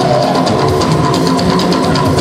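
Live band music with a steady drum beat, played on drum kit, talking drum, keyboard and guitar.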